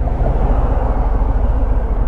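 Harley-Davidson Fat Bob's Milwaukee-Eight 107 V-twin running steadily as the bike rolls in traffic, a continuous low rumble under a haze of wind and road noise.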